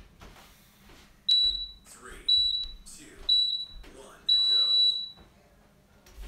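Interval timer counting down the end of a rest period: three short, high beeps about a second apart, then one longer beep at the same pitch that signals the start of the next work interval.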